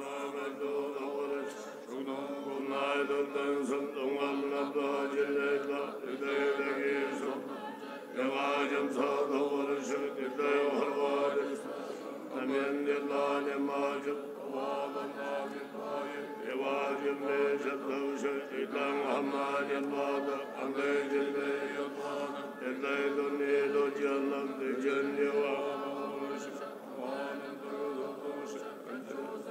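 Buddhist monks chanting prayers together in a low, steady unison recitation, in phrases that swell and dip every couple of seconds; it starts abruptly at the beginning.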